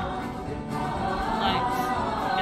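A cast ensemble singing a bluegrass-style musical theatre number together with live band accompaniment, heard in the theatre.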